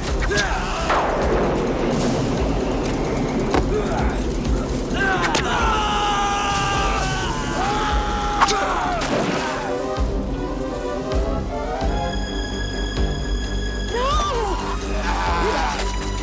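Dramatic film score over fight sound effects: scattered hits and thuds, with shouted cries partway through.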